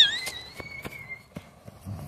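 Light, irregular footfalls of a running puppy and a child on dry grass and fallen leaves. A faint, thin high tone rises slightly and fades out about a second in.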